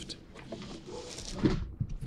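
Cardboard mailer box being handled and its lid swung down, with a rustle of cardboard and a few knocks, the loudest about a second and a half in.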